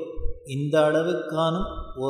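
A man's voice chanting a verse, holding each note long and steady.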